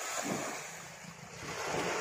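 Small waves washing onto a sandy shore, the surf growing louder near the end.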